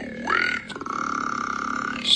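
A man's long, rasping, burp-like vocal sound. It dips and rises in pitch at first, then holds steady on one note for over a second.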